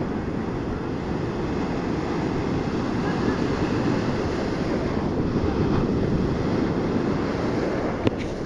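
Ocean surf breaking and washing in over the sand, a steady rushing wash, with wind rumbling on the microphone.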